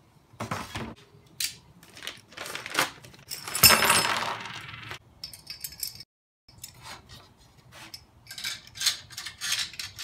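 A plastic bag of small metal antenna mounting hardware being torn open and emptied, with bolts, nuts and washers clinking out onto cardboard; the loudest stretch, a crinkle-and-rattle, comes about four seconds in. Afterwards there are scattered metallic clinks and clicks as metal clamp parts are handled.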